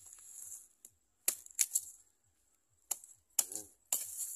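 A small curved hand blade striking and scraping into dry soil and banana roots: about half a dozen sharp, separate clicks and knocks at irregular intervals.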